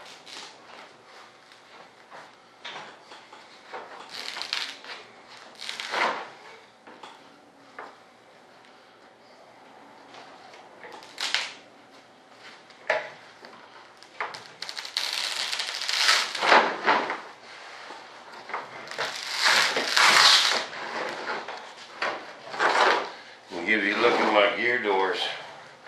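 Rustling and crinkling of vacuum-bagging film and breather cloth being pulled off and bunched up from composite layups, in irregular bursts. The longest, loudest stretches come in the second half.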